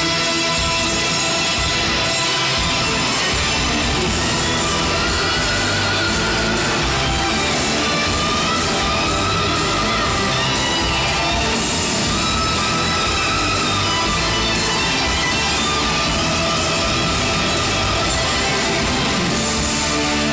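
Loud rock music with electric guitar, played live and amplified through the stage's PA speakers, running steadily without a break.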